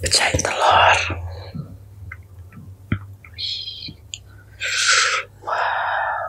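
Close-miked whispering into an ASMR microphone, with a few soft clicks as metal chopsticks break into a fried egg's yolk.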